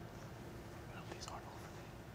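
Quiet hall room tone with a faint steady hum and faint murmured voices about a second in.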